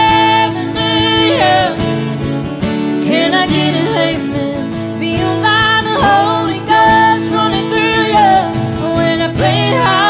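Country song played live on two strummed acoustic guitars, with a woman and a man singing, holding and bending long notes.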